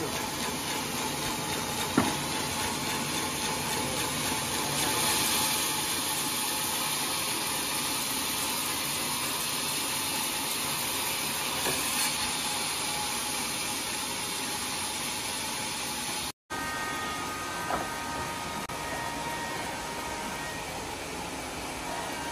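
Sawmill band saw running and cutting through a very large log, a steady hissing noise. It cuts out for an instant about sixteen seconds in, then the noise continues with a faint whine.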